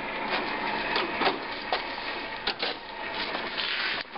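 Irregular clicks, knocks and scraping of things being handled and moved by hand, with several sharp clicks spread through the stretch.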